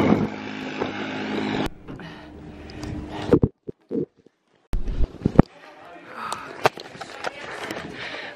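Wind rushing on the microphone while riding a bicycle, cut off abruptly after about a second and a half. Then scattered clicks and knocks from the camera being handled while walking, with a brief gap of silence in the middle.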